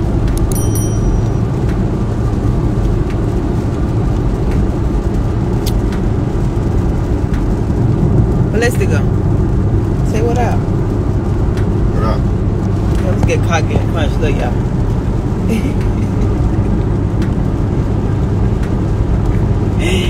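Steady low engine and road rumble of a Ferrari while driving, heard inside the car's cabin. The hum holds level throughout with no revving.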